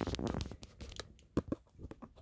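Small clicks and rattles from handling a radio control transmitter: a quick run of clicks at the start, then a few separate sharp clicks.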